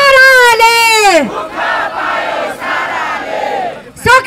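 A woman shouts a slogan through a microphone and horn loudspeakers, her voice falling away about a second in. A crowd then chants the answer together, less loud.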